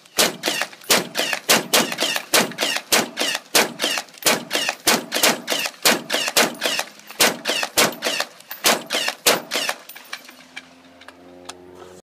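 APF AR-10 rifle in .308 fired rapidly in a long string of shots, about four a second, stopping about ten seconds in.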